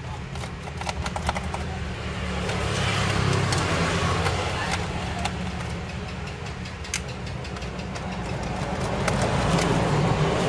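Small screwdriver working the screws of a laptop's plastic bottom case, with scattered light clicks and scraping. A steady low hum runs underneath and swells twice.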